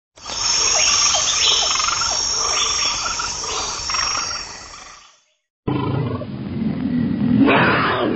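Tiger roar sound effect in two parts: the first fades out about five seconds in, and after a brief silence a second roar starts abruptly and rises to its loudest near the end.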